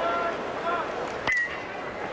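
Ballpark crowd murmur, then a single sharp ping of an aluminium bat hitting the baseball about a second in, with a short ring after it, as the pitch is fouled back.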